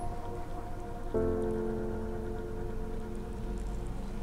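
Background music of held chords, a new chord coming in about a second in.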